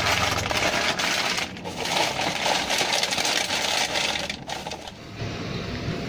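Rubbish being handled and packed into a plastic bag: crinkling plastic with many small clicks and light clatter, quieter in the last second.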